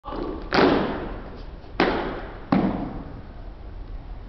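A drill team striking the wooden gym floor in unison: three loud, sharp hits about half a second, just under two seconds and two and a half seconds in, each echoing through the large hall.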